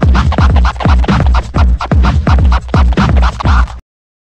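Turntable scratching: a vinyl record pushed back and forth by hand and cut in and out with the mixer fader, in quick repeated strokes over a beat with a heavy bass. The sound stops abruptly just before the end.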